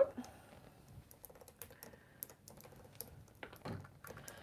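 Faint, irregular light clicks and taps, a few to the second, with no speech.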